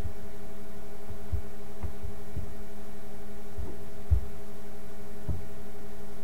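Steady electrical hum from the recording microphone's line, with a few soft low thumps scattered irregularly, the strongest about four seconds in.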